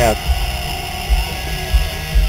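Lincoln car driving, heard from inside the cabin: a steady low rumble broken by irregular low thumps.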